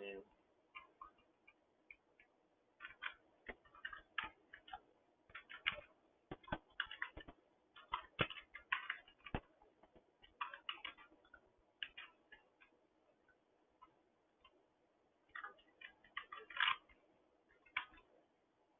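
Computer keyboard typing in quick irregular bursts of faint clicks, with short pauses between the bursts.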